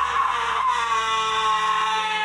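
A woman's voice holding one long high sung note that sinks slightly in pitch, over a steady low sustained tone.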